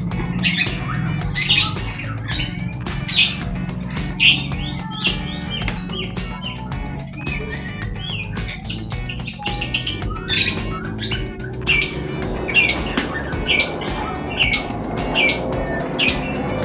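A bird calling over and over in short, sharp, high calls about once a second. In the middle it gives a quick run of even-pitched notes. A steady low hum lies underneath.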